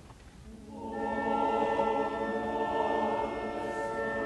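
Opera chorus with orchestra: after a quiet moment, voices and instruments swell in about a second in and hold a sustained chord.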